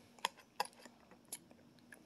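Metal spoon knocking and scraping against a plastic Jell-O cup while scooping, giving a few faint, separate clicks.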